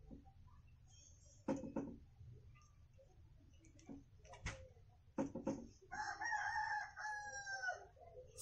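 A rooster crows once, a long call held for about two seconds near the end. Before it, a few short clicks of a marker tapping and drawing dashes on a whiteboard.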